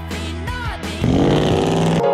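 A song with singing, then about a second in a car engine revving up, louder, over the music.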